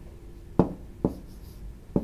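Stylus tapping on the glass of an interactive whiteboard while writing: three sharp taps, the first about half a second in, the last near the end.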